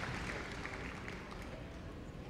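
Audience applause dying away.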